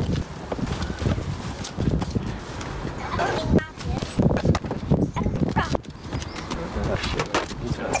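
Irregular knocks, scuffs and thuds of luggage and a plastic cool box being handled and set down in a car boot.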